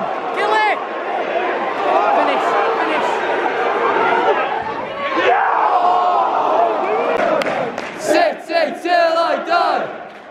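Football crowd in the stands shouting and groaning together, many voices at once. Near the end the noise turns into a rhythmic terrace chant as the fans start singing.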